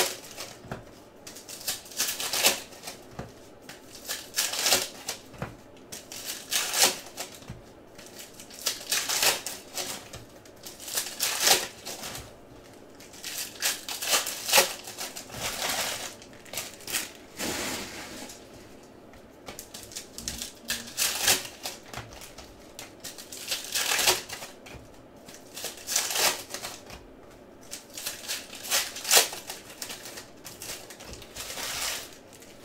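Shiny foil wrappers of Select basketball card packs crinkling and tearing as the packs are ripped open by hand, in irregular bursts every second or two, with the cards being handled and stacked.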